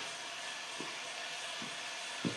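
A computerised German equatorial telescope mount's drive motors slewing the scope to a target, giving a steady whirring whine.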